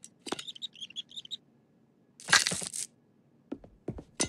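Cartoon sound effects: a quick run of high chirping blips, then a loud whoosh a little over two seconds in, and two light knocks near the end.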